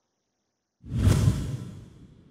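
Whoosh sound effect of an animated logo sting. It comes in suddenly about a second in after a silent gap, then fades away.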